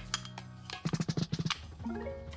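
Background music with held tones and a quick run of percussive taps about a second in.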